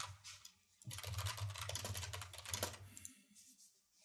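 Computer keyboard keys clicking in quick succession, faint, starting about a second in and stopping near the three-second mark.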